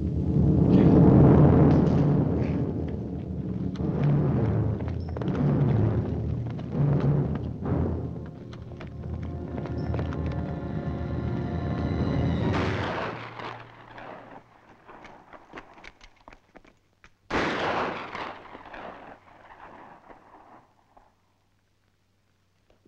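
Dramatic orchestral film score with heavy low drum-like hits, fading out about thirteen seconds in. About seventeen seconds in, a single sharp rifle shot cracks out and dies away with a long tail.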